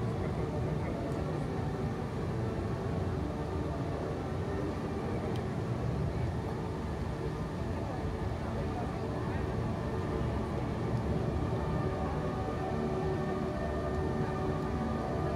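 Steady low rumble of distant city ambience, even throughout with no distinct events.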